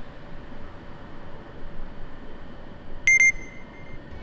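Steady background noise of a city street. About three seconds in there is a quick run of sharp, high electronic beeps, the loudest sound here, trailing off into a fainter held tone.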